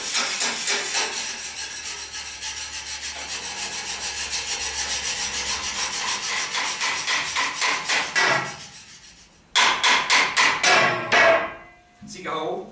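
Kitchen utensils played as percussion on tableware: a fast, even scraping rhythm that fades out about two-thirds of the way through. After a short pause comes a burst of louder clattering strokes with a brief metallic ring.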